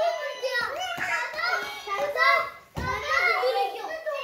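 Young children's voices, high-pitched chatter and squeals while playing, with one dull thump about three-quarters of the way through.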